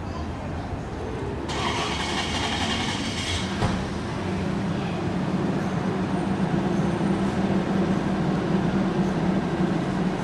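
Downtown street traffic. About a second and a half in, a loud hiss lasts about two seconds and ends with a sharp click. From there a nearby vehicle engine runs with a steady low hum.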